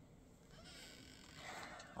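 Near silence with faint rustling that grows a little louder toward the end as skeins of yarn are handled and a bag of yarn is reached into.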